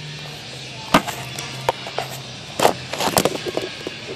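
Handling knocks of a phone being set down and bumped against a hard surface: a sharp knock about a second in, a couple more around two seconds, then a quick cluster of clatters near the end, over faint background music and a low steady hum.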